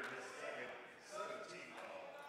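Faint voices of players and spectators talking, echoing in a large gym.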